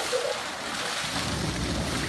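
Steady hiss of water splashing in a pool, with spray from a jet falling on the water surface as children wade through it.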